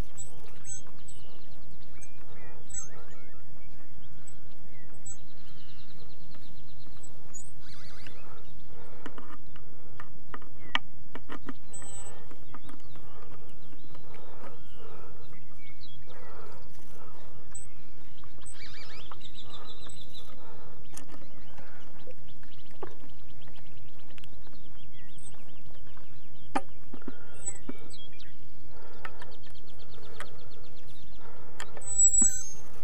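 Steady wind noise on the microphone, with scattered bird chirps and occasional light clicks of a hand nut driver turning the screws on a small wind turbine's generator end cap.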